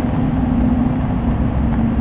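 LLY Duramax 6.6-litre V8 turbodiesel in a 2500HD pickup running under way, heard from inside the cab as a steady low drone with road noise. The intake resonator has been removed, which lets more turbo sound into the cab.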